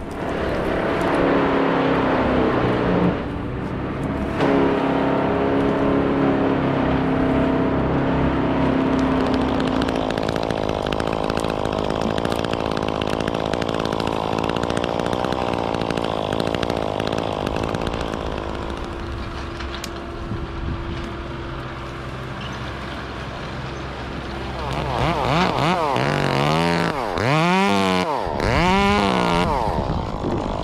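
Chainsaw running in a tree, with a steady note for the first several seconds and a rougher cutting sound in the middle. Near the end the pitch swoops up and down several times.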